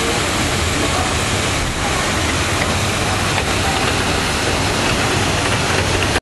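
Steady, loud rush of falling water from an artificial waterfall pouring into a pool.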